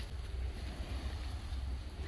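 Low rumble of wind buffeting a phone's microphone, with a faint steady hiss behind it.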